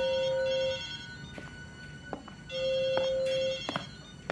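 A mobile phone ringing with an incoming call: two steady electronic rings, each about a second long, with a pause of under two seconds between them.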